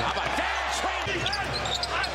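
Basketball bouncing on a hardwood court during live play, with voices behind it.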